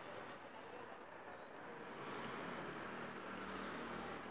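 Faint high-pitched chirps of small birds, a few in the first moment and again near the end, over a faint steady background hum.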